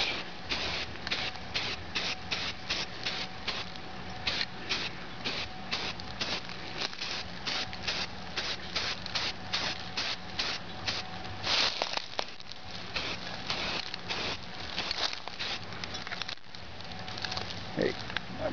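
Aerosol spray can of Rust-Oleum primer hissing in short repeated bursts, a few a second, as a coat of primer goes onto a hatchet.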